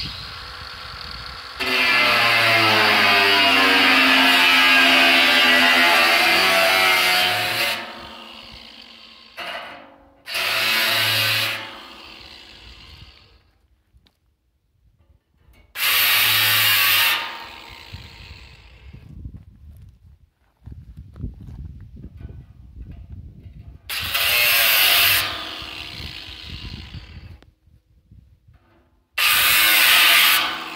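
Angle grinder cutting into the steel lid of a metal drum in bursts: one long cut of about six seconds, its whine dropping in pitch as the disc bites, then four shorter cuts of a second or so, with quieter scraping and handling between them.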